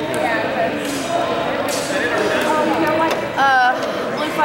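Overlapping chatter of many people echoing in a large hall, with one loud wavering voice calling out briefly near the end.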